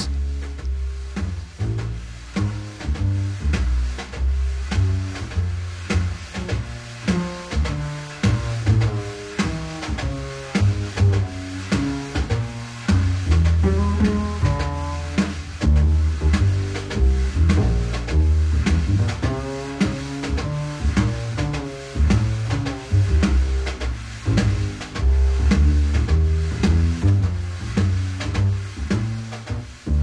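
Wire brushes on a snare drum playing the conventional brush pattern in swing time, a brush sweeping circles on the head with steady taps, over a walking bass line.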